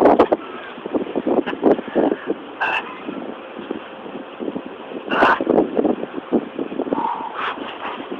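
Wind noise on the camera microphone with irregular crackles and knocks. There is a short louder burst about five seconds in.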